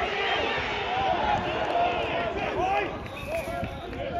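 Several voices shouting and calling at once, with no clear words, from players and touchline spectators during a rugby passage of play.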